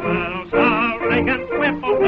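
A voice singing a song verse over band accompaniment, the pitch wavering on held notes.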